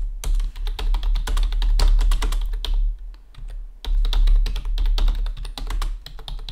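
Typing on a computer keyboard: quick runs of keystrokes, broken by a pause of about a second near the middle.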